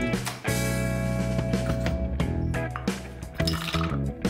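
Background music: a tune of plucked, guitar-like notes.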